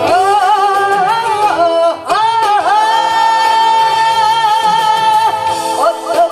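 A woman singing Korean trot into a microphone over backing music, holding one long note with vibrato for about three seconds in the middle.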